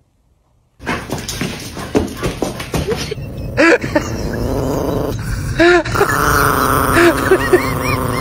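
A dog vocalizing in a series of short moaning calls, each rising and falling in pitch. The calls begin about three and a half seconds in, after a near-silent first second and a stretch of rustling noise.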